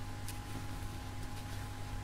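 Steady low electrical hum and hiss, with a few faint short ticks from a steel crochet hook working fine cotton crochet thread.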